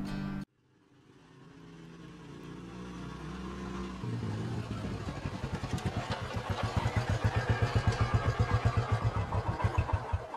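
A motorcycle approaches, growing steadily louder, then runs with a steady pulsing throb that grows stronger towards the end. Background music plays under it.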